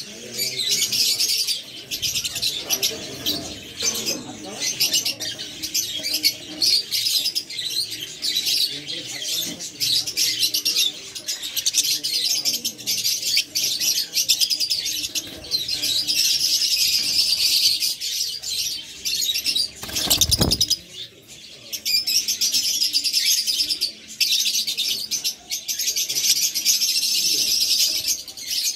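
A flock of caged lovebirds, peach-faced euwing mutations and Fischer's, chattering with continuous, dense high-pitched chirps. A single low thump comes about twenty seconds in.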